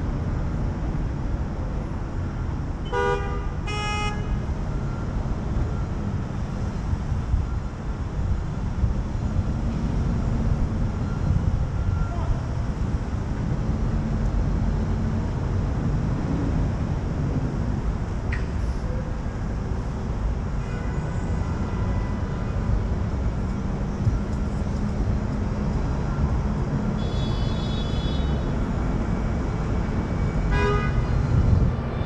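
City street traffic with a steady low rumble. A car horn honks twice in quick succession about three seconds in, and a higher-pitched tone sounds near the end.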